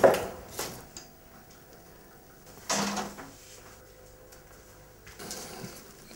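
A front door shutting once, a short thud about three seconds in, with quiet room tone around it.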